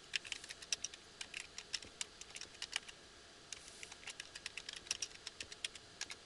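Typing on a computer keyboard: two runs of quick keystrokes with a short pause near the middle.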